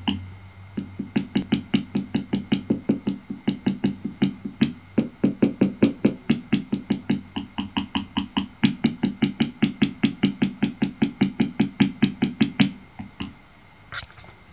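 Handheld vibrating device, its blade tip against a metal spatula, buzzing in short, very regular pulses of about six a second. The pulses pause briefly early on and just before 5 s, and stop near the end.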